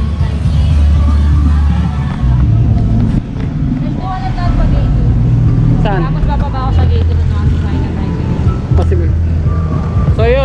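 Street noise: a motor vehicle running with a steady low rumble, and voices in the background.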